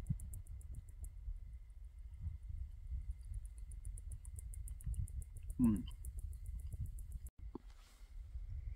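Crickets chirping in a fast, even, high-pitched pulse over a low outdoor rumble. The chirping fades out about a second in, comes back, and cuts off suddenly about seven seconds in.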